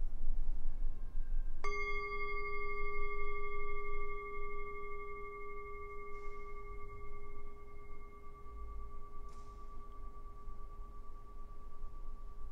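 Metal singing bowl struck once, about a second and a half in, then ringing with several steady tones: the higher ones die away within a few seconds, while the lower ones ring on for many seconds. It marks the start of a period of silent prayer.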